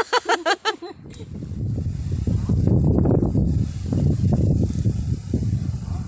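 A short laugh, then from about a second in a loud, gusting low rumble of wind buffeting the microphone in an open field.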